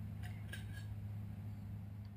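A steady low hum, with a couple of faint short clicks about a quarter and half a second in.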